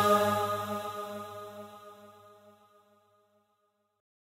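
Sustained vocal drone closing a noha, held on one steady pitch and fading out over about two and a half seconds.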